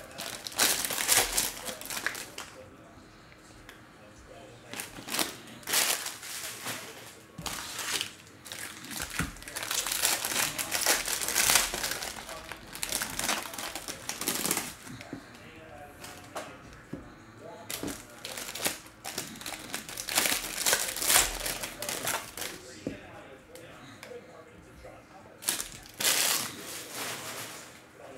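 Bowman trading-card pack wrappers crinkling as packs are opened and handled, in irregular bouts with short quieter pauses between.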